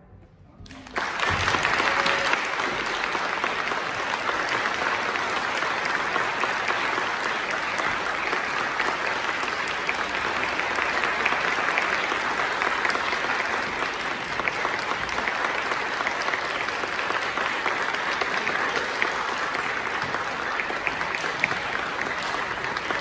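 Audience applauding: after a brief hush the clapping starts about a second in and goes on steadily.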